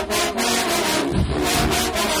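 A large marching band's brass section plays loud sustained chords over a heavy drumline, with deep bass-drum hits and crashing percussion. One big low hit comes about a second in.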